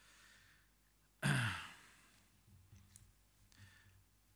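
A man's sigh, close on the microphone, about a second in: a voiced out-breath that falls in pitch, after a faint in-breath. After it come only faint small rustles from papers at the pulpit.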